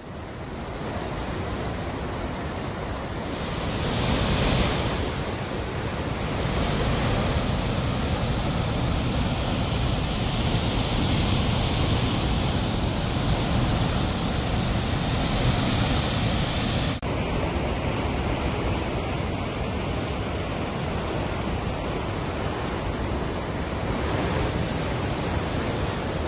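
Steady rush of large volumes of water pouring out of pump delivery pipes into a concrete outfall channel, from pumps run on trial at a lift-irrigation pump house. The sound changes abruptly about seventeen seconds in.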